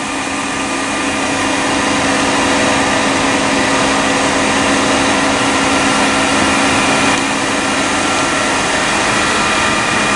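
Heckler & Koch BA 40 vertical machining center's spindle running at full speed with no cut: a steady machine whine of several fixed tones over a hiss, building a little over the first second and then holding level.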